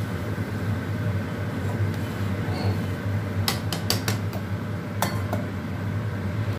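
Metal ladle stirring boiling rice in an aluminium pot, clinking sharply against the pot several times a little past halfway and twice more near the end as the lid goes on. A steady low hum runs underneath.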